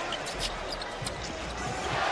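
A basketball being dribbled on a hardwood court, several bounces, over steady arena crowd noise.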